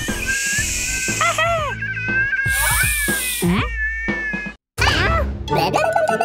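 Cartoon background music under the characters' whining, straining vocal noises, with two short hissing sound effects and a brief cut to silence near the end.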